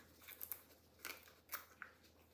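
A few faint, sharp clicks and light handling noise from small plastic pigment jars being handled in gloved hands.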